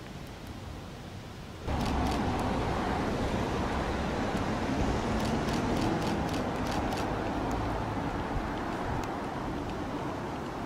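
Quiet street ambience that jumps abruptly, a little under two seconds in, to a loud, steady vehicle and traffic rumble, with a few sharp clicks scattered through it.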